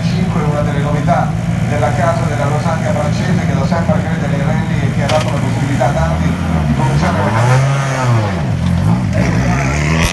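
Rally car engine running with a steady low drone, then revving up and down a couple of times from about six seconds in.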